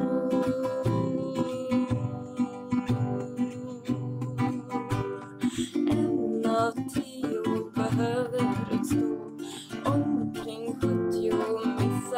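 Acoustic guitar strummed and picked steadily in a folk song, with a voice singing over it in the middle and near the end.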